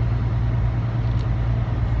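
Semi-truck's diesel engine running, heard from inside the cab: a steady low drone with an even rumble of cab noise.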